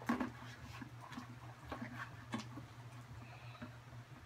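A spoon stirring sticky slime in a plastic tub: scattered soft clicks, scrapes and small squelches at an uneven pace. A low steady hum runs underneath.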